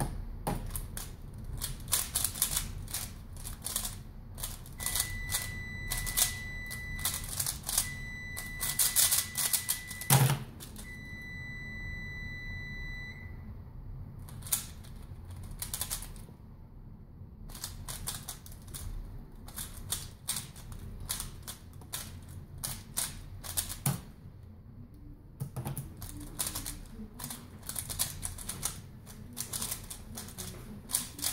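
A plastic 3x3 speedcube (Valk Power) turned very fast, in rapid runs of clicking with a quieter stretch about halfway through. A steady high beep sounds three times in the first half, and there is a single thump about ten seconds in.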